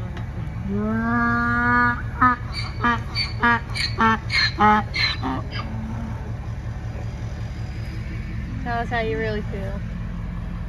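A donkey braying: one long rising call, then a fast run of about ten short hee-haw gasps that alternate in pitch, and a shorter call near the end. A vehicle engine idles steadily underneath.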